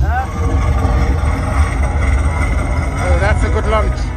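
Steady low rumble of wind buffeting the microphone, with people's voices over it near the start and again in the last second.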